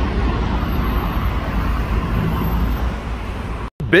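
Steady road traffic noise, mostly a low rumble of passing vehicles, that breaks off abruptly near the end.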